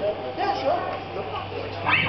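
Voices of people in a crowded hall, with short calls, one of them rising sharply just before the end, over a steady low hum.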